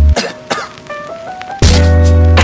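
Music with a heavy, sustained bass. It drops out just after the start, leaving a quieter break of about a second and a half with a few short sounds, then comes back in loud.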